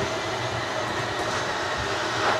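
Schwintek electric slide-out system running as it extends the RV's living-area slide room: a steady mechanical whirring drone of the slide motors.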